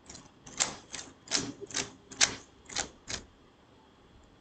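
Computer keyboard keys being tapped: about nine irregular keystrokes over roughly three seconds, then stopping.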